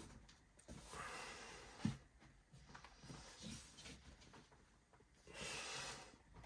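Near silence with faint handling noise while a part of a display case is fitted into place: a soft knock about two seconds in, and faint hissing near the start and the end.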